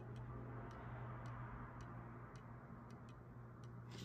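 Faint, regular ticking, about two ticks a second, over a low steady hum in a quiet room.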